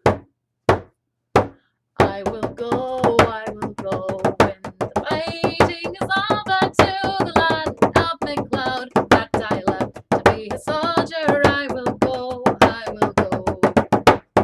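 Bodhrán with a synthetic head struck with a tipper: three single strokes, then from about two seconds in a quick, steady run of strokes with a woman singing a tune over it.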